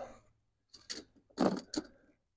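A few short, light metallic clicks and rattles spread over the second half, from a steel tape measure's blade being handled against a roll of barbed wire while measuring it.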